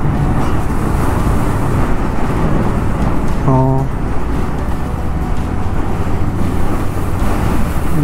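Steady rushing wind noise on the microphone with a motorcycle's engine and road noise underneath, riding at road speed.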